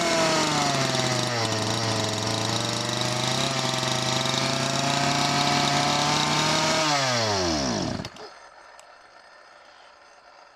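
Two-stroke chainsaw idling steadily, then winding down and stopping about seven seconds in, its pitch falling away over roughly a second.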